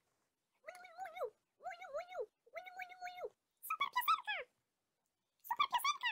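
A high-pitched voice making a series of short wordless calls, about five in a row with short gaps, each holding its pitch and then dropping at the end.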